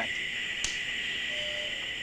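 A steady hiss, with a single sharp click about two-thirds of a second in.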